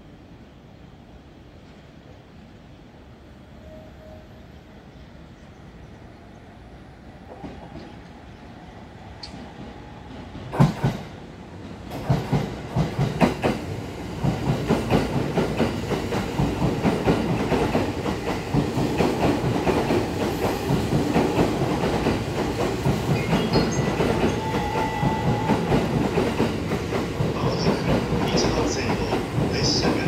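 JR East E231-series electric commuter train passing through the station at speed without stopping. After about ten quiet seconds come a few sharp, loud wheel clacks over rail joints. A continuous rapid clattering of wheels and rails follows and stays loud as the cars go by.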